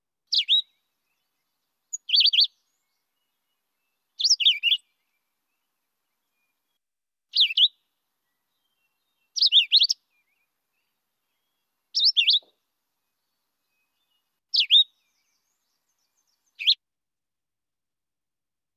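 Philadelphia vireo singing: eight short, high phrases spaced about two seconds apart, each a quick up-and-down warble, with pauses between.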